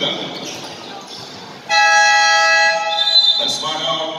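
Basketball game buzzer: one loud, steady electronic horn blast that starts suddenly a little under halfway in and lasts under two seconds.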